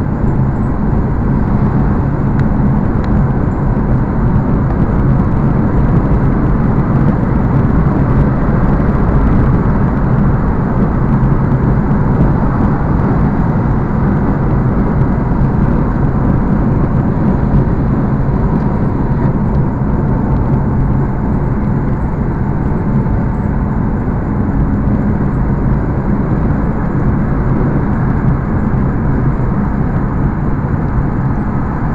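Steady road and engine noise of a car cruising at road speed, heard from inside the cabin: tyre rumble and engine drone at an even level with no sudden sounds.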